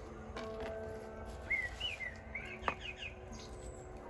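A bird singing a short phrase of whistled chirps that swoop up and down, starting about a second and a half in, with a sharp click just after the phrase. Faint steady tones sit underneath.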